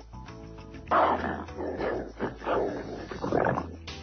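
A man growling and grunting like a caveman in four rough bursts, starting about a second in, over background music.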